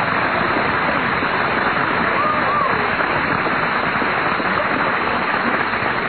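Studio audience applauding steadily, a dense even clatter of clapping.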